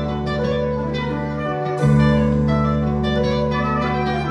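Live band playing an instrumental passage: electric guitar over keyboards, bass and drums, with a held bass note that moves to a new note and swells about two seconds in.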